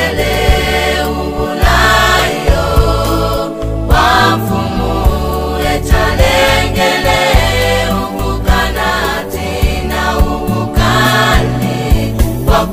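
Gospel song: sung vocals with choir-style harmonies over a steady bass and drum beat.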